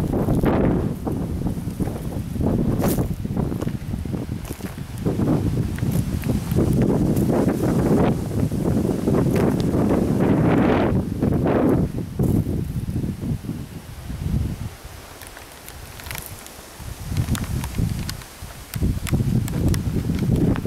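Wind buffeting the camera microphone in uneven gusts, with scattered footsteps and rustling on dry ground and leaves. It eases off for a few seconds past the middle, then picks up again near the end.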